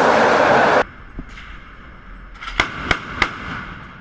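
A ship's anchor drops into the sea with a loud rushing splash that cuts off abruptly under a second in. Near the end come three sharp shots from a ship's deck-mounted gun, about a third of a second apart.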